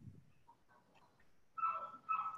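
Near silence, then two short, steady, high-pitched whines close together near the end.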